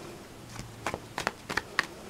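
Tarot cards being shuffled by hand: a quick run of light, sharp card clicks, starting about half a second in.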